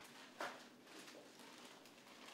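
Faint background ambience with one brief sharp sound about half a second in, followed by a few fainter short sounds.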